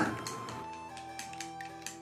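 Wooden chopsticks beating eggs in a ceramic bowl: a quick run of light clicks, several a second, as the chopsticks strike the bowl, over soft background music.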